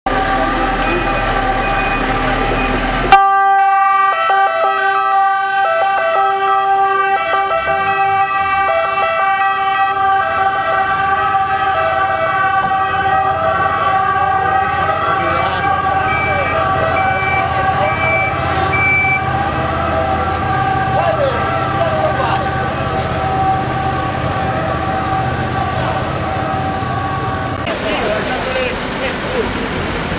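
A siren-like tone held on one steady pitch, with a second tone breaking in and out about once a second, and people talking under it.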